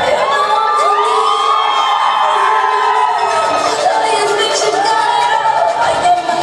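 Audience screaming and cheering, with several long high-pitched shrieks that rise and hold, overlapping one another, and a fresh round of shrieks near the end. The dance music's bass beat drops out throughout.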